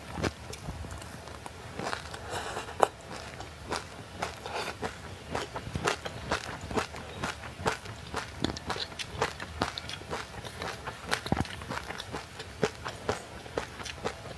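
Crunching and chewing of frozen passionfruit ice coated in sesame seeds: a steady run of sharp crisp crunches, several a second.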